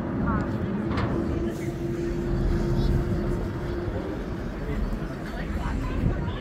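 Car ferry's diesel engines running with a continuous low rumble as the boat gets under way, with a steady hum that stops about four seconds in.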